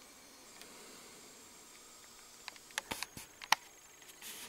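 Handling noise from a handheld camera in a small room: faint steady hiss, then a cluster of sharp clicks and knocks in the second half, the loudest about three and a half seconds in.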